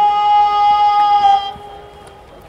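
A single loud, steady held musical note, rich in overtones, that dies away about a second and a half in.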